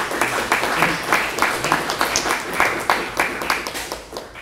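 Audience applauding: many hands clapping irregularly, with some voices mixed in, thinning out near the end.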